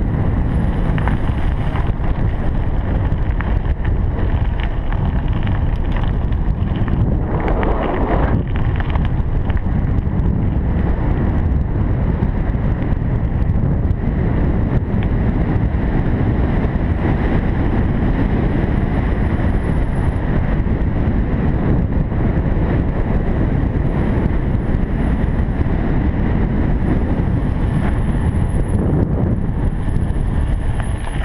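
Wind buffeting the camera microphone on a moving bicycle, with the rolling noise of the tyres on asphalt underneath: a loud, steady rush with a brief swell about eight seconds in.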